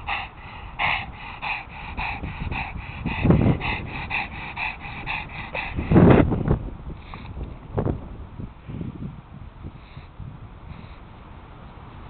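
A pug panting rapidly, about three pants a second, after running around, with two louder, deeper puffs of breath about three and six seconds in. The panting eases and quietens after about seven seconds.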